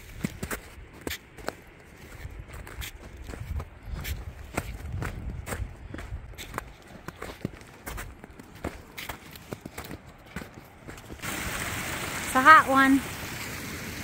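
A hiker's footsteps on snow and dirt trail at a steady climbing pace, about two steps a second, with sharp taps among them. Near the end the background turns louder and windier, and a short voice is heard.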